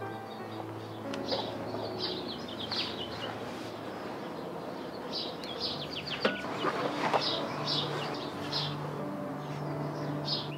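Birds chirping over and over above sustained background music, whose chord changes about halfway through.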